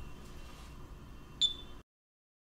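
Faint room noise, then a single sharp click with a brief high ringing about one and a half seconds in, after which the sound cuts off to silence.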